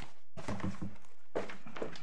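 Papers being handled while a page is looked for in a court document bundle: pages turning and rustling, with a few soft knocks.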